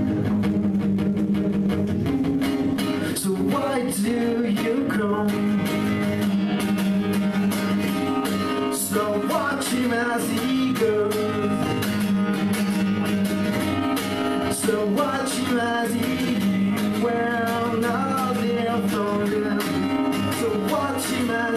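A man singing live while strumming an acoustic guitar in a steady rhythm.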